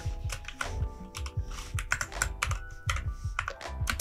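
Typing on a computer keyboard: a quick, irregular run of keystrokes, over soft background music.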